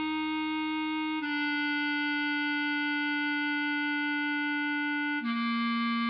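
Bass clarinet playing a slow melody line: a note held for about four seconds, then a step down to a lower note near the end.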